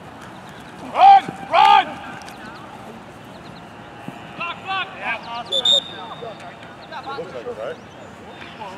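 Players shouting on the field: two loud yells about a second in, more calls around the middle, then a short, high referee's whistle blast a little before six seconds.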